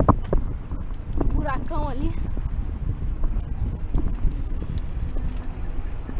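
Wind buffeting the microphone and road rumble from riding along a street, with a few knocks as the camera's vehicle rolls over the paving. A short spoken word comes about two seconds in.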